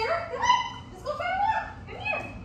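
German Shepherd puppy whining: a few high, drawn-out cries in a row, each sliding up and down in pitch.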